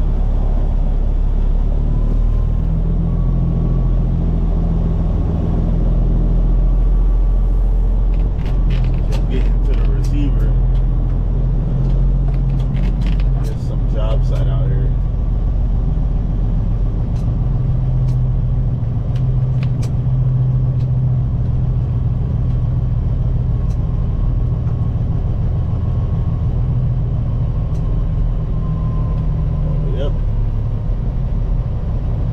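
Peterbilt 379 semi truck's diesel engine heard from inside the cab while driving, a steady low drone whose pitch shifts a few times. A cluster of short clicks and rattles comes about eight to fifteen seconds in.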